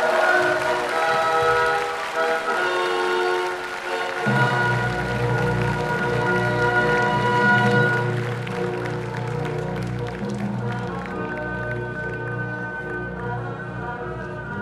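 Orchestral music holding sustained chords, with a deeper bass part entering about four seconds in. Applause runs under the music through the first half.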